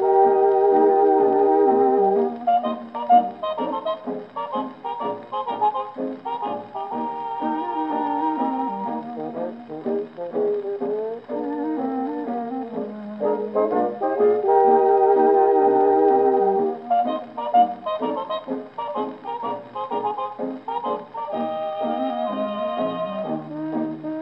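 A 1933 dance-orchestra fox trot record playing on a 1926 Victor Credenza Orthophonic Victrola, an acoustic phonograph with a steel needle. It is an instrumental passage with brass to the fore and no vocal, heard with the thin sound of an acoustic horn: no deep bass and no high treble.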